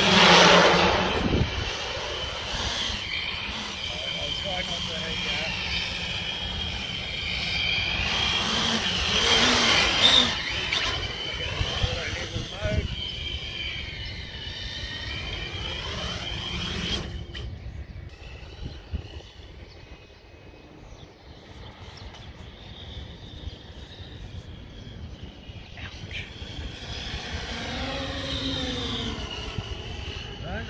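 Large X-class FPV quadcopter's electric motors and propellers whining in flight, the pitch sweeping up and down as it passes and changes throttle. The sound drops off sharply about 17 seconds in and swells again near the end.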